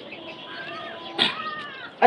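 A cat meowing twice: a short call about half a second in, then a longer, louder call with a rise and fall in pitch.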